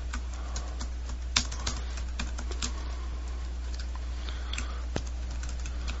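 Irregular clicks of a computer mouse and keyboard, a few sharper than the rest, over a steady low hum.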